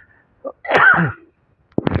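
A person's short wordless vocal burst, falling steeply in pitch, about a second in, just after a brief faint sound.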